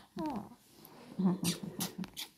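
Dobermann giving one short whine that falls in pitch about a quarter second in, followed by a few brief scuffing noises of handling close to the microphone.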